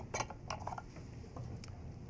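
Light metallic clicks and clinks as the metal lid of a phono preamp's chassis is handled and lifted off. The sharpest clicks come in the first second, followed by a few fainter ticks.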